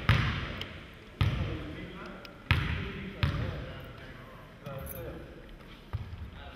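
A basketball bouncing on a hardwood gym floor, four hard bounces at uneven intervals in the first few seconds and a lighter one near the end, each ringing out in the hall's echo.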